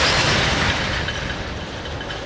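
Freight train of tank cars rolling past, with a low rumble of wheels on rail. A loud rushing noise fades over the first second, and faint, steady, high squealing comes in near the end as the train brakes towards a stop.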